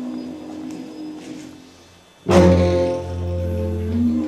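Prepared string quartet playing sustained low drones that thin out and grow quieter. A little over two seconds in, a loud low note with a sharp attack and many overtones comes in and holds.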